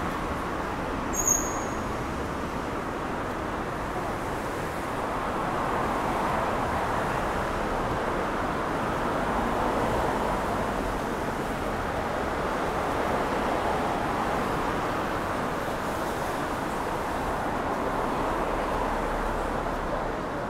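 Steady city street traffic noise from cars passing on the adjacent road, swelling and easing gently. A brief high-pitched chirp sounds about a second in.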